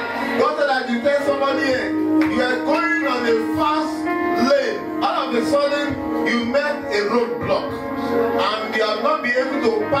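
Worship music in a large hall: a man's voice through a microphone, chanting or singing without clear words, over a steady held low chord.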